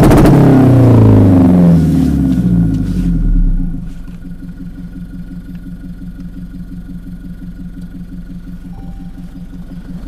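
Toyota Hilux's 2GD four-cylinder turbodiesel, heard through its exhaust: a rev winds down with falling pitch over the first few seconds, then the engine settles into a steady idle about four seconds in.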